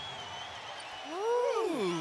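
A man's drawn-out exclamation, a long "ohhh" that rises and then falls in pitch, starting about a second in over faint arena background: a commentator reacting to a dunk.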